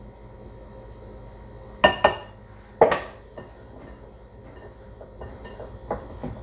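A spoon knocking against a glass mixing bowl three times about two seconds in, each a sharp ringing clink, followed by soft scraping and handling of biscuit dough in the bowl, over a low steady hum.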